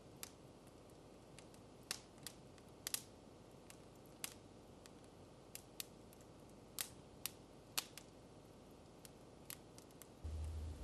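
Prayer beads clicking as they are fingered: sharp, irregular clicks, about one or two a second, over faint room tone.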